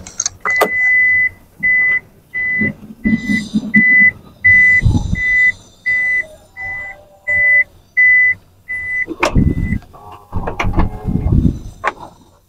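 A van's warning chime beeping evenly at one high pitch, about three beeps every two seconds, the first beep held longer; it stops near the end. Knocks and rustling of handling inside the cabin come in between the beeps and after them.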